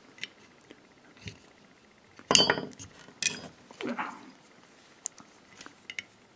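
Small metal Torx driver tools clinking and clicking as they are handled and fitted together: one sharp clink with a brief ring a little over two seconds in, then a few lighter clicks.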